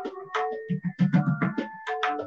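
Tabla solo: a qaida played as quick strokes on the treble drum (dayan) with short ringing tones, mixed with deep resonant bass strokes on the bass drum (bayan), which come thickest in the second half.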